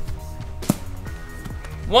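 A golf club strikes a mini basketball once, a single sharp hit about two-thirds of a second in, over background music.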